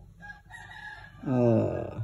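A rooster crowing faintly for about a second. Near the end comes a louder, drawn-out human sound with falling pitch, a hesitation before speech resumes.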